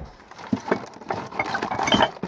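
Dishes clinking and knocking together in a wire dish rack inside a cupboard as a hand rummages through them for a cup: a scatter of small irregular knocks that starts about half a second in.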